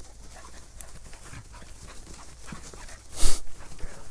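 A dog moving about in leafy undergrowth and panting, with small rustles and ticks, and one short, loud burst of noise about three seconds in.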